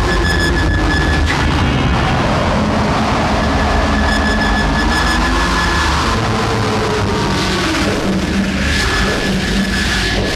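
Loud, dense rumbling drone from a film soundtrack, with a steady high whine and slowly gliding tones over it, mixing score and sci-fi sound effects.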